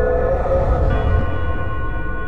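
Dark ambient music: a deep sustained drone with a bell-like tone struck at the start, and higher held tones joining about a second in.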